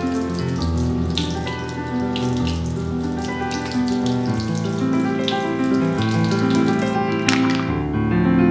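Kitchen faucet running into a sink, the water splashing irregularly over a mussel shell being scrubbed with a sponge, with a louder splash near the end. Piano background music plays throughout.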